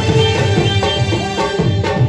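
Live Pashto attan dance music: a band playing a melody over a fast, steady hand-drum rhythm.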